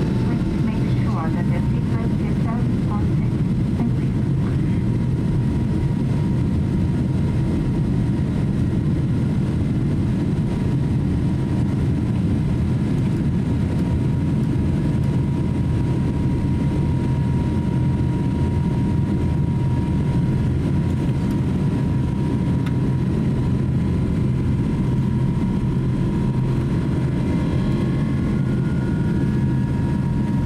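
Boeing 777-200 jet engines and airframe heard from inside the cabin during the takeoff roll, a loud steady roar with a thin high whine running through it, as the airliner accelerates and lifts off.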